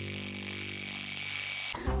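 The held closing chord of a radio-show jingle: a steady sustained tone with a faint hiss, cut off shortly before the end when the next music starts.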